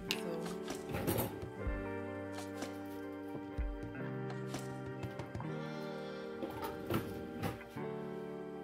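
Background music with sustained chords that change every second or two.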